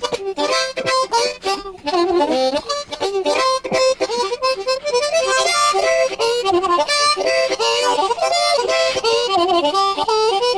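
Solo harmonica playing a fast blues riff on the low notes of the harp: a quick, rhythmic run of short notes and chords, with some notes bent down in pitch.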